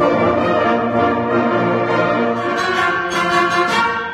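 A full school concert band playing sustained chords, brass to the fore. It comes in sharply and breaks off at the end.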